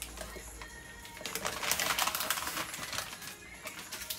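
Baking paper crinkling and rustling as a sheet of pastry is flipped over on it and the paper is peeled away. It is loudest in the middle stretch and dies down near the end.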